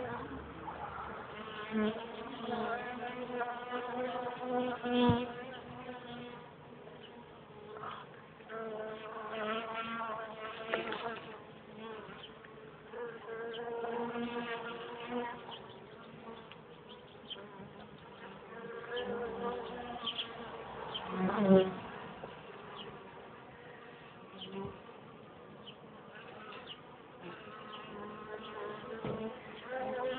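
Honeybees buzzing close to the microphone in swells that come and go every few seconds, the pitch wavering as they fly past. A few light knocks are heard, the loudest about five seconds in.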